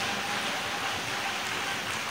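A pause in the speech filled by a steady hiss of background noise, with no words.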